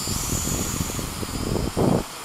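Wind rumbling on the microphone, with the faint high whine of a small Hubsan X4 H502E quadcopter's motors as it flies off. A louder gust comes near the end.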